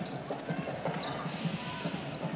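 Basketball bouncing on a hardwood arena court during live play, a run of irregular low thuds over the steady background noise of the arena.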